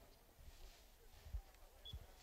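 Near silence: faint outdoor ambience, with a soft low thump a little past halfway.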